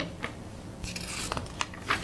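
Rustling of large paper plan sheets being handled, with a few short clicks and light knocks.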